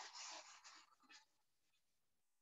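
A faint, brief scratchy rustle lasting about a second, fading out just past the first second.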